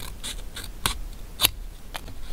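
A paper sticker being peeled off its backing with metal tweezers: a handful of short, crisp ticks and crackles, the two sharpest a little before and a little after the middle.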